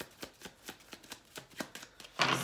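A deck of tarot cards being shuffled by hand: soft, even card slaps about four to five times a second.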